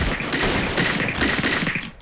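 Anime sound effect of many necks snapping in rapid succession: a dense run of sharp cracks over a low rumble, stopping just before speech resumes.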